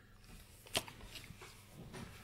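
Faint handling noises: soft rustling, with one sharp click a little under a second in, as a coil of solder wire is handled and set down on card packaging.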